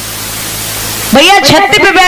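Steady hiss with a low electrical hum, slowly growing louder. About a second in, a loud amplified voice suddenly cuts in over it.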